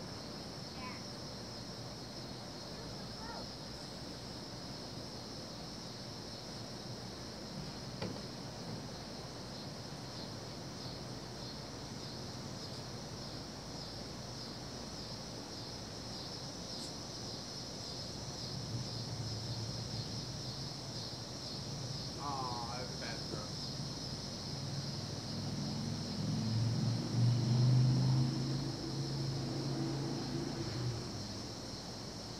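Steady high-pitched insect chorus throughout, with a low engine-like hum that builds in the last third and is loudest near the end.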